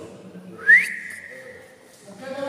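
A person whistling: one loud note that slides quickly upward, then holds and fades over about a second.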